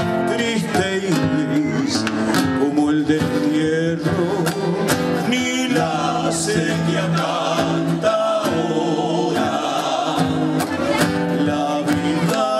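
Live folk music: a group of men singing over strummed acoustic guitars.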